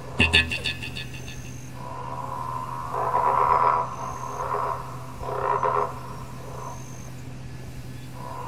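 Green and golden bell frog calling: a quick rattle at the start, then three croaks about a second apart in the middle.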